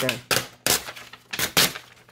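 A quick run of about four sharp clacks of a metal ruler and paper being handled against a hard stone countertop.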